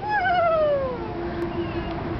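Young child's high-pitched squeal of delight while sliding down a slide, wavering and sliding down in pitch over about a second. It is followed by a lower, steady held note.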